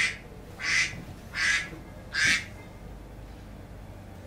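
An incoming-call signal: four short, noisy buzzes, evenly spaced about three-quarters of a second apart.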